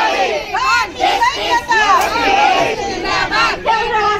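Crowd of protesters shouting slogans together, many voices overlapping in a loud, rhythmic chant.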